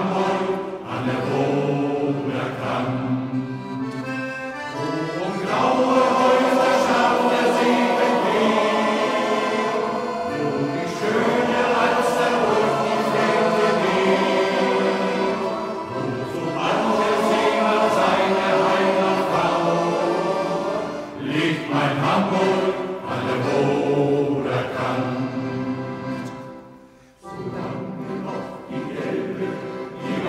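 Music from a sailors' choir recording: choir and instrumental accompaniment in long, held phrases, with a short break near the end.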